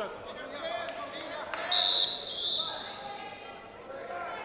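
A referee's whistle: one short, high blast about halfway through, among voices calling out in the hall.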